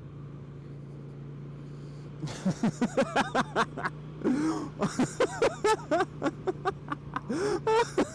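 Kawasaki VN800 Drifter's V-twin engine running with a steady low hum while cruising. About two seconds in, the rider breaks into a long fit of loud laughter, in rapid bursts, over the engine.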